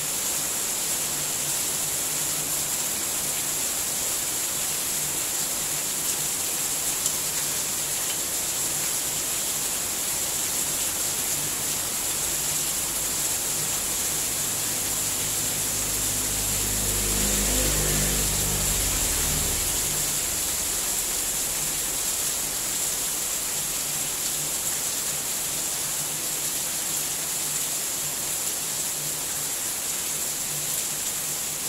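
Steady hiss, with a high-pitched ring over it. About halfway through, an engine passes by, its rumble swelling and fading over several seconds.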